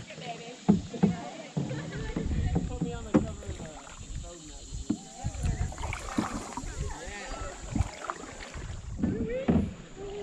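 Canoe being paddled on a slow creek: paddle strokes in the water and a few sharp knocks on the canoe, with wind rumbling on the microphone at times. Faint voices of other paddlers carry across the water.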